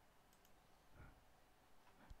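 Near silence: faint room tone with a few very soft clicks.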